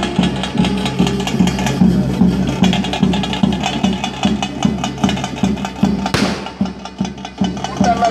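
A drum ensemble plays festival music: an even low drum beat of about two to three strokes a second, with fast, dense stick-drum strokes over it. A brief rushing noise cuts across the music about six seconds in.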